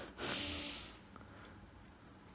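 A man's single short, breathy exhale close to the microphone, lasting under a second, followed by quiet room tone.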